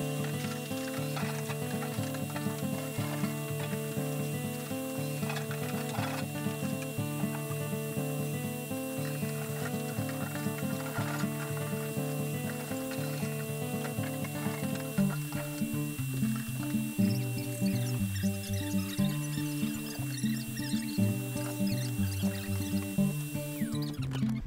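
Background music: an instrumental piece of held notes changing in steps, its bass line moving lower and busier in the second half.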